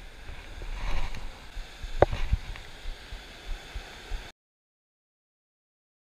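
Wind buffeting the microphone over breaking surf, with a couple of sharp knocks about two seconds in; the sound cuts off suddenly after about four seconds.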